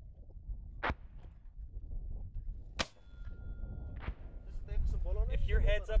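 Three sharp, short cracks of distant shell explosions, about a second in, near the middle and at about four seconds, over a low wind rumble.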